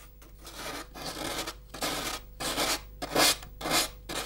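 Hand sanding of a thin wooden soundboard: a small piece of sandpaper rubbed back and forth around the edge of the round sound hole, in irregular strokes about two a second.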